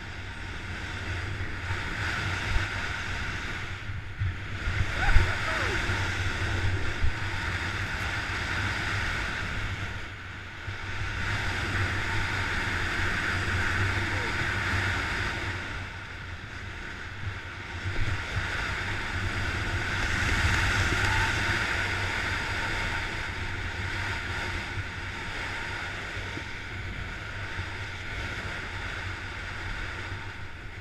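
Wind buffeting an action camera's microphone while riding fast downhill, mixed with the rushing scrape of edges on packed snow. The noise swells and eases in long waves every few seconds as the rider turns down the slope and over a jump.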